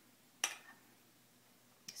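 A single sharp clink of a utensil against a glass about half a second in, as topping is added to a glass of cream soda, with faint room tone around it.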